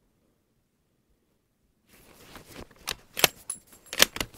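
Bolt of a Barrett MRAD bolt-action rifle being worked after a shot: a quick run of sharp metallic clicks and clacks starting about two seconds in, one of them with a brief high ring.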